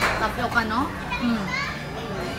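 Children's voices chattering and calling out, overlapping, with a short knock right at the start.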